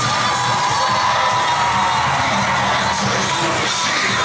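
Loud pop-style cheer routine music with a crowd cheering and whooping over it.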